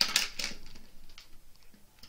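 Crinkling and rustling of a thin clear plastic bag as a plastic drill tray and tools are pulled out of it, loudest in the first half second, then a few faint crackles dying away.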